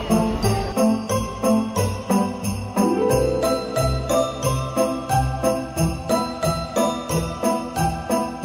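Background music with jingle bells shaking on a steady beat of about three a second, over pitched instrumental parts.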